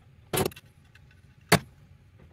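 Hammer striking twice, two sharp knocks about a second apart, the second one louder and shorter.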